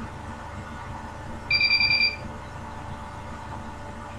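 A short, high-pitched electronic beep, rapidly pulsing like a buzzer trill, lasting under a second about midway, over a steady background hum.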